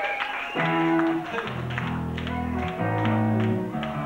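Live punk rock band's electric guitars and bass holding sustained notes that shift pitch about once a second, over light, even ticks about four a second.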